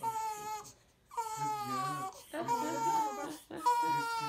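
A newborn baby crying in a series of wails, each lasting up to about a second, with short breaks between them.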